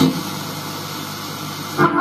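Sanyo M-X960K boombox radio being tuned between stations: the music drops out to a steady hiss of static, and near the end another station's music comes in.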